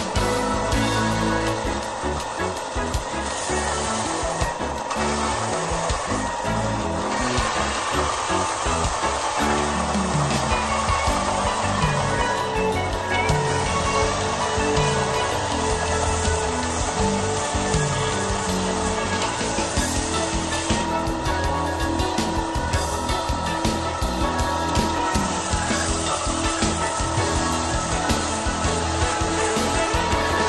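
Background music with a tabletop power sander running as a wooden panel is fed across it to sand down a misaligned joint.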